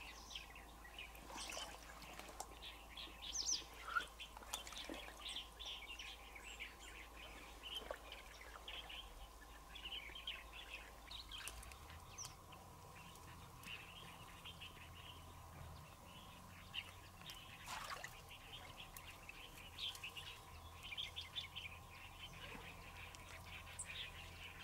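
Small birds chirping faintly and repeatedly, many short calls scattered throughout.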